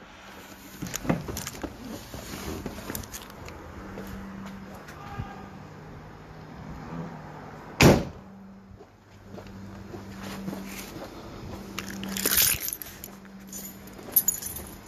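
Small clicks and rattles of locking up, with one loud bang just before eight seconds in, over a faint steady low hum.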